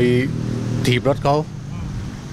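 A man speaking, with a steady low hum behind his voice.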